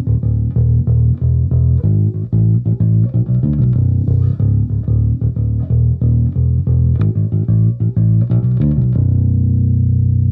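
Five-string MTD Kingston P-style electric bass played through an amp: a fingered bass line of quick plucked notes deep on the low B string, ending on a long held low note near the end. The low end is massive.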